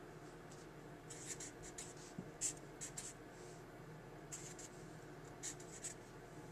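Faint strokes of a felt-tip marker writing on paper, coming in short scratchy clusters about a second in, around two and a half to three seconds, and near the end.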